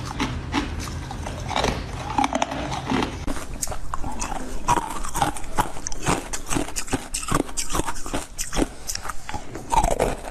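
Close-miked crunching and chewing of frozen jelly: many quick, irregular crisp crunches as the icy pieces are bitten and chewed.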